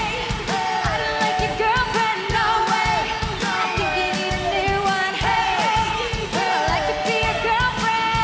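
Live rock band playing a pop-punk song: a steady drum beat, electric guitars and sung vocals.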